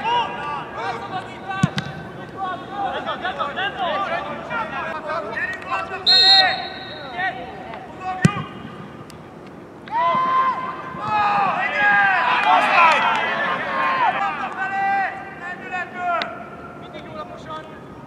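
Several footballers shouting and calling to each other on the pitch, the voices overlapping most densely from about ten to sixteen seconds in. A short, high whistle blast sounds about six seconds in, and there are two sharp knocks, near the start and about eight seconds in.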